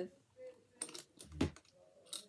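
A few light clicks and taps from something being handled, with a soft thump about one and a half seconds in.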